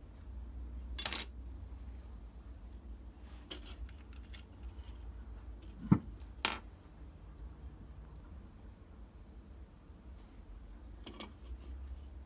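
A sharp metallic clink about a second in, typical of a thin steel rule being put down on the workbench, followed by a few softer knocks and clicks as a black plastic enclosure and a small LED marker light are handled. The clearest of these is a dull knock and a click about six seconds in.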